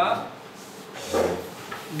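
A brief, muffled bump with a low thud under it, about a second in. A man's speech trails off at the very start.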